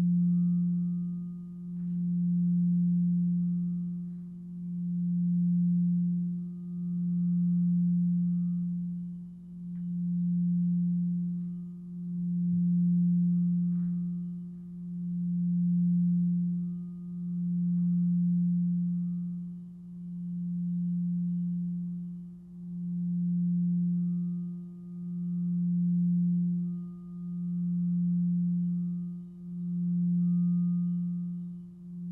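Frosted crystal singing bowls ringing, dominated by one deep steady tone with a fainter higher overtone. The sound swells and fades in slow even pulses about every two and a half seconds, with a few faint light ticks from the mallet.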